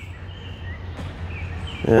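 Outdoor ambience with a steady low rumble and a few faint, high bird-like whistles, plus one faint click about a second in; a man says "yeah" at the very end.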